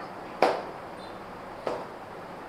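Two short, sharp knocks about a second and a quarter apart, the first louder, over faint steady room hiss.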